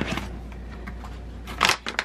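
Plastic packaging rustling and crinkling as it is handled, with a louder burst of crinkling about one and a half seconds in, over a low steady hum.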